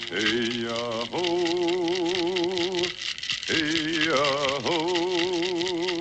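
A man's solo mourning chant without words: two long phrases, each entered with a sliding fall from a high pitch into a held note with a wide, steady wobble, with a short break between them. A fast, even rattling beat runs behind the voice.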